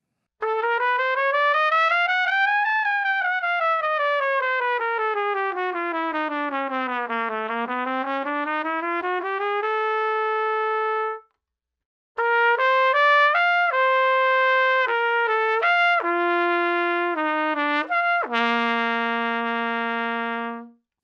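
Trumpet playing a lower-to-middle register exercise. First a smooth stepwise run climbs, falls to a low note, climbs back and holds a note. After a short pause, a second exercise of separate held notes with leaps ends on a long low note. These are exercises for an even tone across the notes from low F sharp up to the F sharp above high C.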